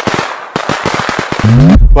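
A string of firecrackers going off in a dense, rapid crackle of sharp pops, cut off just before the end; a short rising tone comes in near the end.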